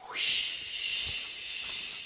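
Rustling of a red cloth costume cape as it is swept up and draped over a man's shoulders: a steady hissing rustle that starts suddenly and slowly eases off.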